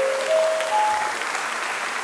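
Audience applauding, with a few held musical notes climbing in steps during the first second.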